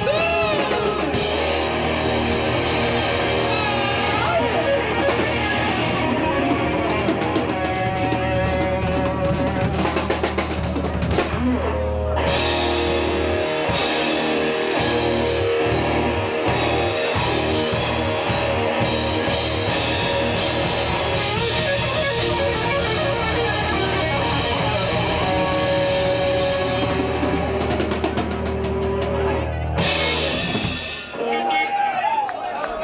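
Live rock band playing loudly: electric guitars, bass and drum kit, with a singer. About halfway through, the steady low bass drops away for a few seconds and the drum strokes come to the fore.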